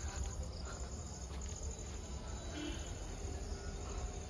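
Crickets chirping in a fast, steady, high-pitched trill, with a low rumble underneath.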